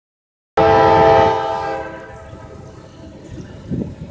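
Norfolk Southern GE Dash 9-44CW diesel locomotive's air horn sounding one loud chord, starting abruptly about half a second in and fading out by about two seconds. After it comes the low rumble of the locomotive working hard, sounding as if it is struggling to pull its freight train up the grade.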